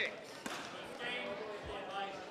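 Indistinct voices in a badminton hall between rallies, with a sharp knock about half a second in and a low thud near the end.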